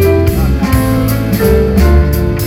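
Live band playing a jazz-tinged electronic instrumental: held notes and a guitar over a steady bass line, with cymbal strokes keeping a regular beat.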